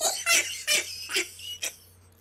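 Stifled laughter: a run of short snickering bursts, about two a second, that die away near the end.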